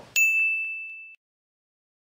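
A single ding sound effect: one bright, high tone struck just after the start, ringing steadily for about a second before it cuts off abruptly, followed by dead silence.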